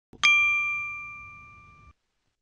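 A single bell-like chime sound effect, struck once about a quarter second in, ringing with a clear high tone that fades away over under two seconds. It is a cue marking the start of a listening exercise.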